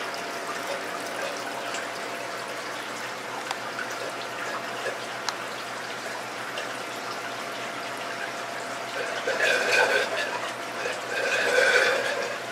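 Aquarium water trickling steadily from a slow airline-tubing siphon into a bucket of fish being acclimated, with louder patches of sound near the end.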